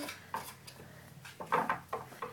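A poodle's paws and claws knocking and scraping on a wooden bunk-bed ladder as it climbs: a few light knocks, the loudest cluster about one and a half seconds in.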